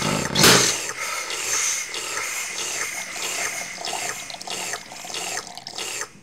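Liquid gushing and gurgling through pipes, with a loud rush about half a second in, followed by a busy run of short squeaky, bubbling sounds.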